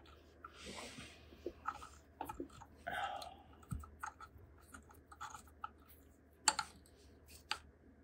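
Faint scattered clicks and light metal scrapes of a steel left-hand-thread installer rod being turned by hand onto an engine's pinion shaft, with a few soft rustles; the sharpest click comes about six and a half seconds in.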